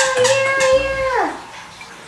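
A dog's long, steady howl that drops away in pitch and fades just over a second in.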